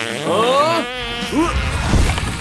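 Comic fart sound effect: a raspy, fast-fluttering blast, followed by a low rushing gust that builds toward the end.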